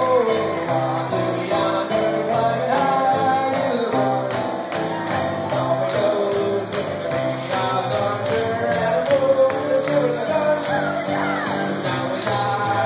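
Live grand piano played with a steady run of chords while a man sings the melody into a microphone.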